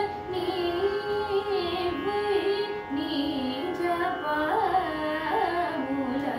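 A young woman singing a Carnatic melody in raga Bilahari, with gliding, ornamented phrases. Under the voice runs the steady drone of an electronic shruti box.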